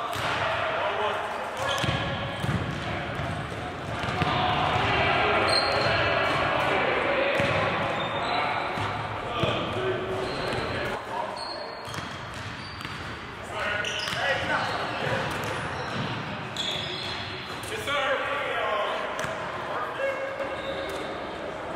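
Basketballs bouncing repeatedly on a hardwood gym floor and off the rim and backboard during three-point shooting, as a run of sharp thuds that echo around the hall, with voices talking over them.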